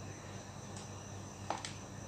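Quiet room tone: a steady low hum under a faint, steady high-pitched whine, with a soft tick before the middle and a light click about one and a half seconds in.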